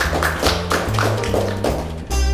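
Upbeat outro music with a steady beat of about four strokes a second over a bass line.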